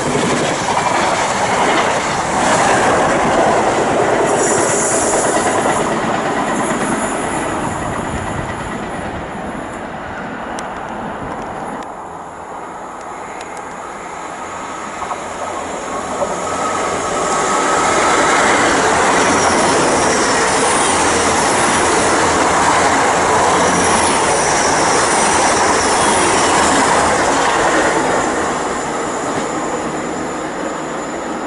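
A First Great Western HST train with Mark 3 coaches running past along the platform, loud at first and fading away. After a quieter spell near the middle, a GWR Class 800 train comes in and passes, loud again for most of the second half.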